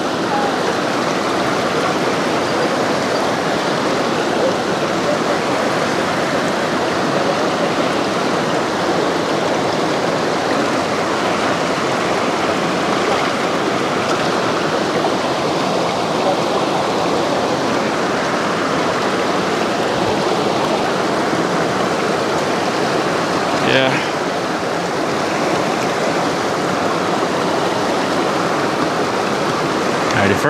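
Rushing water of a shallow, rocky river, running steadily over stones, with a single light knock about three-quarters of the way through.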